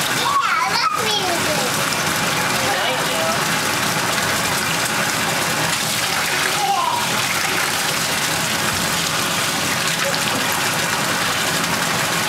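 Steady rush of running water in a baby's bath, with a couple of short vocal glides about a second in and near the middle.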